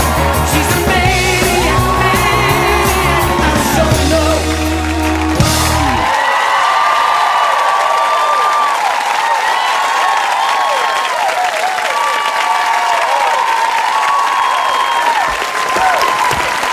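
Upbeat rock-and-roll jive music with a singer, ending on a final hit about six seconds in. A studio audience then cheers, whoops and applauds.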